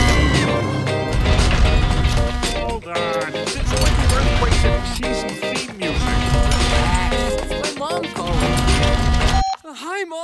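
Theme music of an animated series' opening titles, with voices over it. The music cuts off sharply just before the end.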